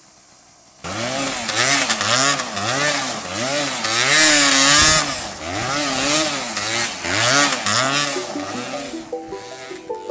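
Yamaha DT 200's two-stroke single-cylinder engine revving up and down over and over, about once a second, with one longer high rev midway, as the dirt bike spins its rear wheel in loose dirt. It starts suddenly about a second in.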